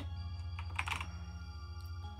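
Typing on a computer keyboard: a short run of keystrokes right at the start and another about a second in, over soft background music.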